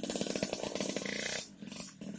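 Small motorcycle engine revving hard, a rapid, raspy firing rhythm that drops off for about half a second near the end before picking up again.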